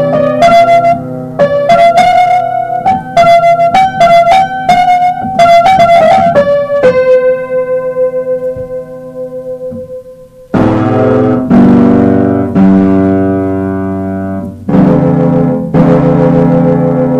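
Electronic keyboard playing a melody of single struck notes, then one long held note that fades out, followed by slow, sustained chords.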